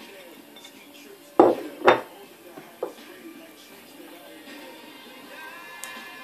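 Ceramic dishes knocking together twice, about half a second apart, followed by a lighter click: plates and a serving bowl handled while chopped ingredients are tipped in.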